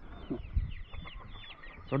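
Birds chirping: many short, high, falling chirps in quick succession, over a few low knocks.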